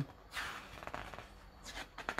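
Paper rustling as a hand slides over and turns the page of a large softcover book. It is a soft, even rustle lasting about a second and a half.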